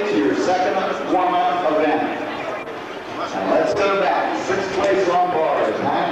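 Indistinct voices talking, a man's among them, with no clear words.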